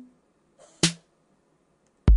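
A marimba note from Chrome Music Lab's Song Maker fades out, then a single short, sharp electronic drum hit sounds from its percussion row about a second in.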